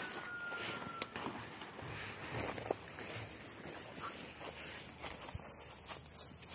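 Footsteps and rustling as someone walks through garden grass, under a steady high-pitched hiss. A thin whistle lasting about a second comes near the start, and a couple of soft clicks follow.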